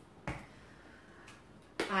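A single sharp click about a quarter second in as a small spice jar is handled and opened, followed by quiet room tone.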